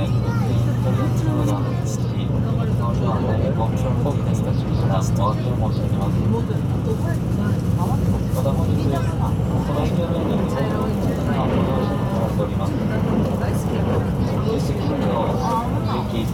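Steady running noise from inside a JR West 681 series electric train in motion, a constant low rumble. Indistinct passenger chatter runs over it throughout.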